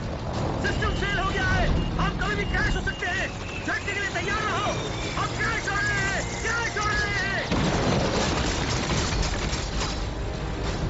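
Film battle-scene sound mix: a dense low rumble of engines and fire throughout, with many short rising-and-falling voice-like calls over it from about a second in until about seven and a half seconds.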